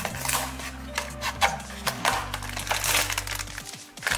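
A small cardboard blind box being opened by hand, then the foil bag from inside it crinkling in the fingers: a run of short crackles over light background music.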